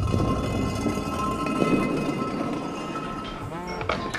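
Music: held synth chords over a low bass rumble, with no singing.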